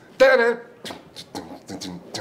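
A man's voice: one short voiced sound a quarter second in, followed by a few short mouth clicks and breaths.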